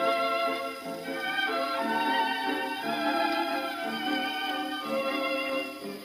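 Music from a 78 rpm record playing acoustically on an HMV 163 gramophone, heard through its sound box. The turntable is turning under the load of the playing record at 78.2 rpm, just over the nominal 78.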